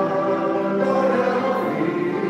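Congregation singing a hymn together, in long held notes.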